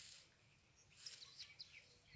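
Near silence, with a few faint, brief bird chirps about a second in.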